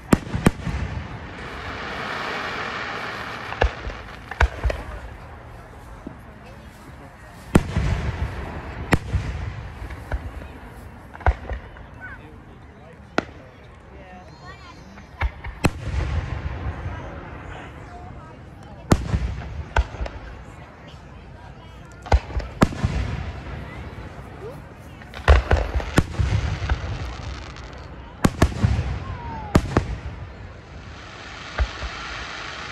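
Aerial fireworks shells bursting overhead, sharp bangs every second or two with short gaps, and a quick run of bangs near the end.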